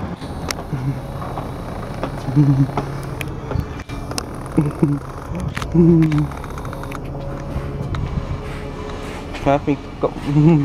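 Single-deck bus engine running as the bus pulls slowly round a tight turn: a steady low rumble with a faint whine. Short hummed 'mm' sounds from a person come and go over it.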